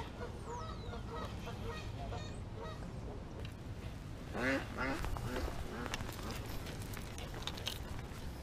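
Waterfowl calling across the water, a short series of calls about four and a half seconds in, over a steady low outdoor background.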